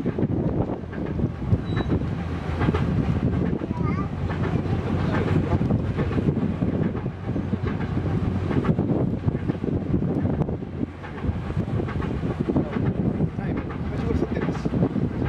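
Steady low rumble of a heavy-load transporter running and slowly moving the Shinkansen car it carries.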